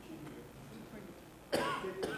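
A single loud cough about one and a half seconds in, over faint murmuring voices in the room.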